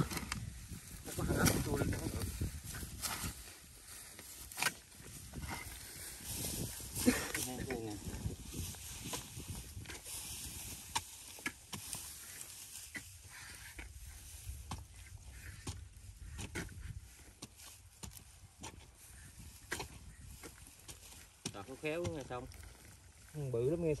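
Long-handled hoes and a shovel chopping and scraping into damp soil while a rat burrow is dug open: a string of irregular dull strikes, with a few low voices now and then.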